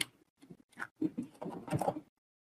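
Computer keyboard keystrokes: a few separate taps, then a quicker run of typing over the last second, as a number is typed into a software dialog field.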